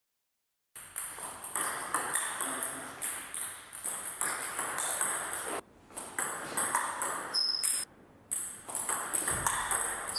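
Celluloid-style table tennis ball being hit back and forth in forehand flick drills: quick sharp ticks of bat strikes and bounces on the table, several a second. They start about a second in, with two brief gaps.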